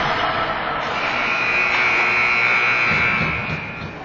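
A single steady high-pitched tone, held for about three seconds starting about a second in, over the noise of an ice rink.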